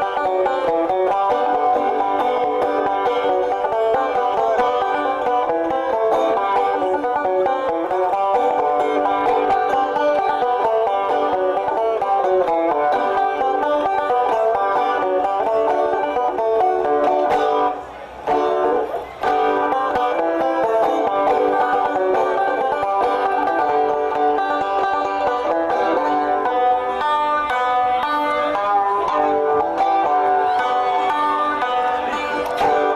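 Solo clawhammer-style five-string banjo playing a steady, unbroken run of plucked notes. About eighteen seconds in the playing breaks off twice briefly, with a note sliding in pitch.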